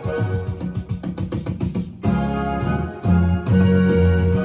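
Acoustic guitar playing an instrumental break between sung lines: a quick run of picked notes for about two seconds, then fuller held chords.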